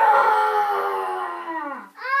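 A child's voice holding one long, drawn-out vocal call that slowly falls in pitch and dies away near the end.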